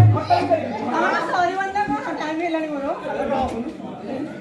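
Performers' voices in lively spoken dialogue, with a brief low boom at the very start.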